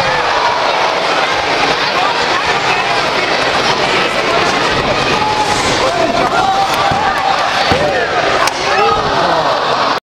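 Arena crowd shouting and cheering, many voices at once and no single speaker. A sharp knock comes about eight and a half seconds in.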